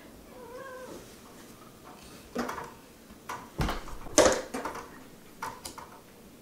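A domestic cat meowing, a short faint call that bends in pitch about half a second in. Several brief sharp sounds of a deck of cards being handled follow it, the loudest a little after four seconds in.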